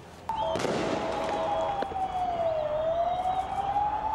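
A siren wailing slowly: its pitch falls for about two and a half seconds, then rises again, over a steady rushing noise. There is a single short click about two seconds in.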